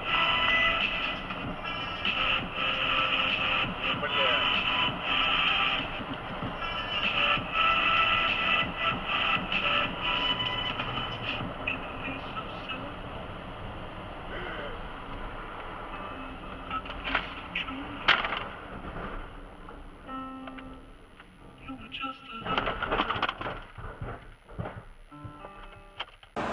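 Music with a voice over it, louder in the first half and quieter later, with a few sharp clicks partway through.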